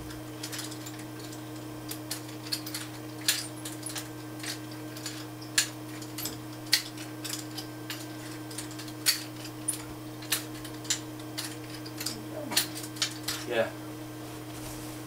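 Nunchaku being spun and passed around the shoulders: sharp, irregular clicks and rattles from the chain and sticks, two or three a second and busier near the end.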